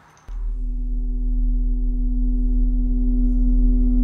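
A steady electronic drone starts about a third of a second in: a deep low hum with several held tones above it, slowly growing louder, opening a record-label logo sting.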